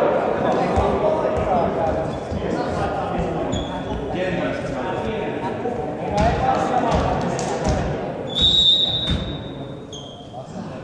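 A volleyball bouncing on a sports-hall floor, echoing in the large hall under players' indistinct voices, then one long blast of the referee's whistle about eight seconds in, signalling the serve.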